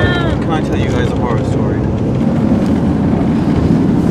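A van's engine and tyres giving a steady low rumble, heard from inside the cabin while it drives along a road.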